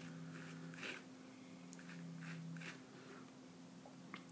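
Faint scraping of a steel palette knife drawing oil paint across a paper test sheet: a few short, soft strokes, over a steady low hum.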